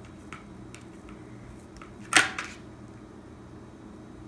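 A kitchen knife tapping lightly against a plastic cutting board as a hot dog is sliced open, a few small ticks, then one loud sharp clatter about two seconds in.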